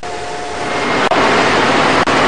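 Ambient noise of a crowd moving through a building site, a steady wash that fades up and grows louder, after a faint steady tone dies away in the first second.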